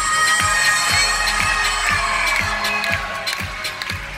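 Live pop band playing a song, driven by a steady kick drum at about two beats a second, with sustained keyboard and guitar lines above it.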